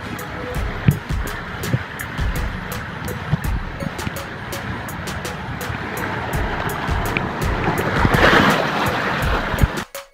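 Rushing water and the rider's body sliding down a water slide flume, with dull knocks as the body bumps the slide. It grows loudest about eight seconds in and cuts off suddenly near the end.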